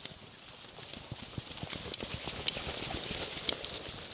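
Rapid snowshoe footsteps in snow, a quick run of short thuds that grows louder as the snowshoer comes closer, with a few sharp clicks among them.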